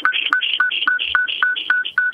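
Rapid train of short electronic beeps coming over a telephone line, about four a second, at one steady pitch. It is a fault on the caller's line as the call is put on air.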